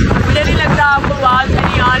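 Wind buffeting a phone's microphone on a moving motorbike, a heavy steady rumble with road and engine noise under it, and a man's voice coming and going over the top.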